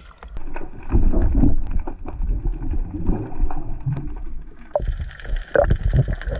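Seawater sloshing and splashing against a waterproof action camera at the surface, with low, irregular rumbling as the water buffets the housing. Near the end the sound turns brighter and hissier as the camera dips under the water.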